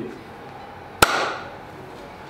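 A single sharp knock about halfway through, followed by a short fading noise, over a low steady room background.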